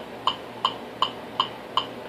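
Metronome clicking steadily at 160 beats per minute, about five clicks.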